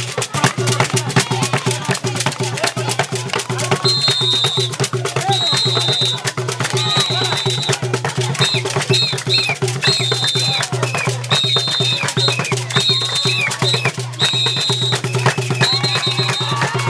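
Fast hand-drum rhythm with crowd hand-clapping and voices singing along, a live drum circle for dancing. From about four seconds in, a high shrill tone sounds in short repeated blasts over the drumming.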